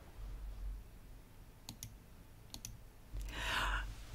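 Faint hum on a video-call line with two pairs of light clicks about halfway through, then a short breath near the end.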